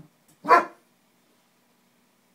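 A single short, loud yelp, about half a second in.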